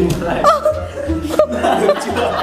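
People laughing and chuckling over background music.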